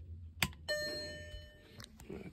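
A click as the bench box's ignition switch is pressed, then a single bell-like chime about two thirds of a second in that fades over about a second: the VW Golf Mk5 instrument cluster's gong as it powers up with the ignition back on.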